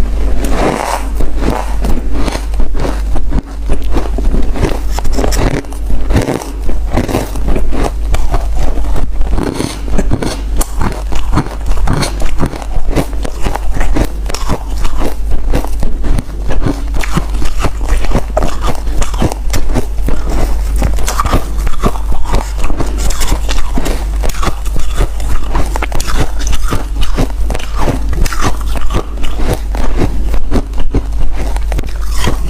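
Mouth crunching through a block of powdery freezer frost: bite after bite of packed frozen ice crumbling and crunching between the teeth in a dense, continuous run, over a steady low hum.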